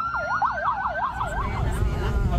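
Emergency vehicle sirens: a fast yelp sweeping up and down several times a second over a steadier high wail. They fade about a second and a half in, leaving a low rumble.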